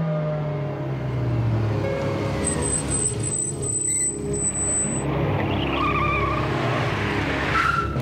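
Cars driving up and braking to a stop, engines running, with tyres squealing and skidding in the second half. Background music plays underneath.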